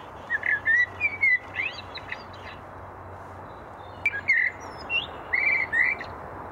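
Bird song played back from a hand-cranked bird-call box as its handle is turned: runs of short chirps and whistled notes, with a pause of about a second and a half in the middle.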